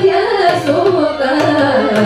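Live Carnatic vocal music: female voices singing a gliding melody, shadowed by a violin, with mridangam strokes, one about half a second in and another near the end.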